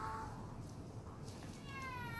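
Newborn baby crying during a belly massage: a short whimper at the start, then a longer, high cry that falls slightly in pitch, starting about a second and a half in.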